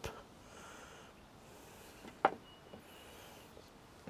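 Quiet background with a single sharp click or tap a little past halfway, made while flour is being sprinkled by hand into a pot of mashed potato.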